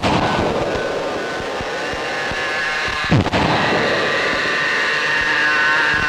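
Experimental noise music: a dense, steady noisy drone with thin high whistling tones that grow louder in the second half, and one sharp hit with a falling swoop about three seconds in.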